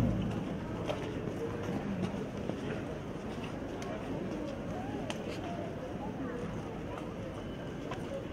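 Indistinct murmur of an outdoor crowd, with a few sharp clicks.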